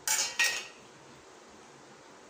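Stainless-steel plate clattering as it is set down against metal: two quick clanks about a third of a second apart, the second ringing briefly.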